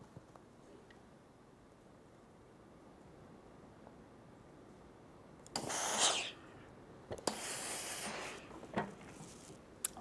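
Rowenta steam iron pressing a quilt seam: a short hiss of steam about halfway through, then a sharp click and a second, longer hiss about a second later, with light clicks near the end as the iron is handled.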